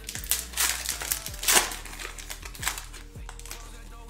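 A trading card pack wrapper being torn open and crinkled by hand, in a run of sharp rustles that is loudest about a second and a half in and dies down in the second half.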